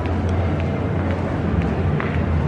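Indoor shopping mall ambience: a steady low rumble with faint footsteps on a tiled floor at a walking pace, about three steps every two seconds.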